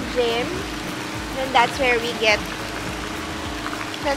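Steady splashing of water from a pool's arching fountain jets falling into the pool, with a few short snatches of a voice over it.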